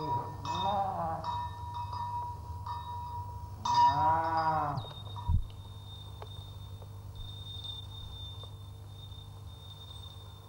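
Two long, low calls that rise and then fall in pitch, the second louder, over a steady high tone. A single dull thud follows about five seconds in, then only a faint steady high whine.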